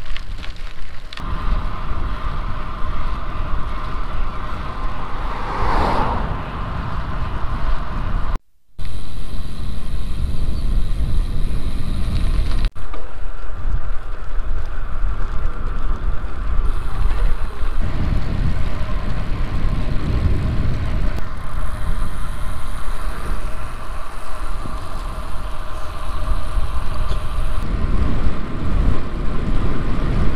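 Wind buffeting a bike-mounted camera's microphone while road cycling, with a steady rush of tyre and road noise. A vehicle passes about six seconds in. The sound drops out briefly at a cut about eight seconds in, and the level shifts at later cuts.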